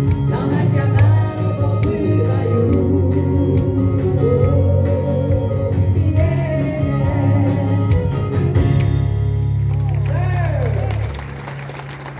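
A woman singing a French-language country song into a microphone over guitar accompaniment. The music stops about eleven seconds in.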